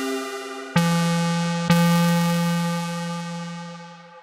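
Prophanity software synthesizer, an emulation of the Sequential Circuits Prophet-5, playing bright, buzzy sustained notes. A held note fades out, then a lower note strikes about three-quarters of a second in, is struck again about a second later, and slowly fades away near the end.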